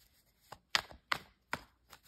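About five light, sharp taps, roughly two to three a second: fingers tapping on tarot cards laid on a table.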